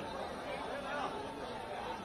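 A large crowd chattering, with many voices talking and calling over one another in a steady babble.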